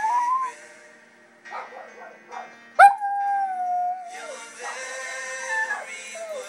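Shih Tzu howling along to a song playing in the room: a held howl trails off and rises in the first half second, then a second long howl starts sharply about three seconds in, holds one pitch for over a second and drops at the end. The song's music fills the gaps.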